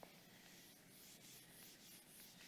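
A handheld whiteboard eraser wiping marker off a whiteboard: a faint, quick series of back-and-forth rubbing strokes, about four a second.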